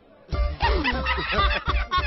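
Men laughing heartily over background music with a steady low beat, starting suddenly a moment in.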